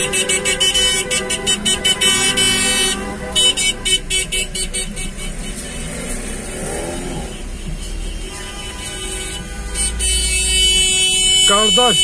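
Car horns honking in celebration in slow traffic: rapid runs of short beeps for the first several seconds, then held horn blasts near the end, with voices shouting in between.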